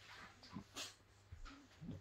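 French Bulldog making a few short, quiet whimpers and grunts while play-fighting with a hand, with a brief sniff in between.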